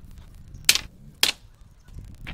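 Plywood strips knocking down onto a concrete floor and against each other: two sharp wooden clacks about half a second apart.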